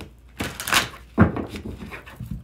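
A deck of tarot cards being shuffled by hand: a brief crisp riffle about half a second in, then a single dull thump, the loudest sound, a little after a second, with lighter card taps after it.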